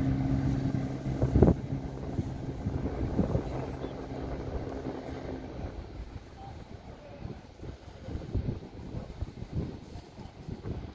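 Two-coach Class 170 Turbostar diesel multiple unit pulling away, its engines running with a steady low drone that fades out about halfway through as the train recedes. A loud thump comes about a second and a half in, and wind buffets the microphone toward the end.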